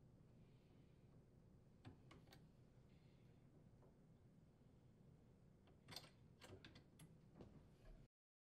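Near silence, with a few faint clicks of a Phillips screwdriver working the screws of a dishwasher's metal mounting bracket: a couple about two seconds in, then a small cluster near the end.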